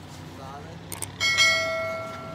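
Two quick mouse clicks, then a bright bell ding that rings out and fades over about a second and a half: the sound effect of a YouTube subscribe-button and notification-bell animation.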